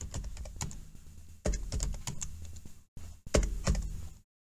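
Computer keyboard typing: a run of quick, irregularly spaced keystroke clicks as a line of code is entered.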